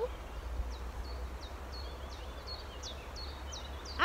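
A small songbird in woodland calling: a run of short, high chirps, each dropping in pitch, about three or four a second, over a steady low rumble.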